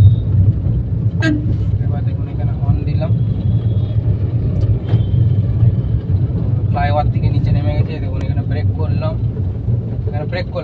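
Steady engine and road rumble heard from inside a moving Suzuki car's cabin, with short faint horn toots from surrounding traffic.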